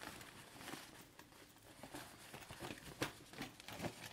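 Faint rustling and crinkling of a thin fabric foldable shopping bag being unfolded out of its pouch and handled, with a few light clicks, the sharpest about three seconds in.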